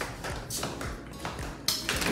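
Background music with a light, steady tapping beat.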